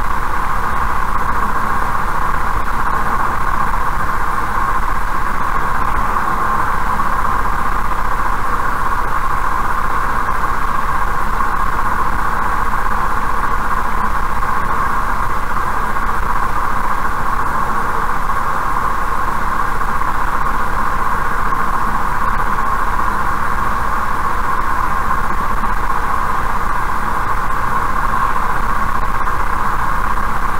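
Steady road and tyre noise of a car cruising on an asphalt highway at about 80 km/h, heard from inside the cabin as an even, unbroken hiss with a low rumble beneath.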